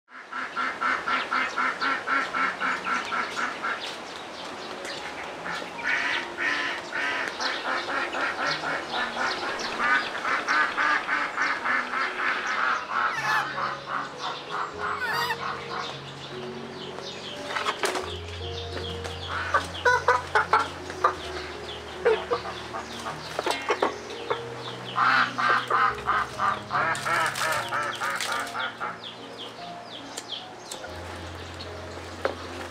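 Birds calling in repeated fast runs of short notes, in several bouts, over background music that adds low held notes from about halfway through.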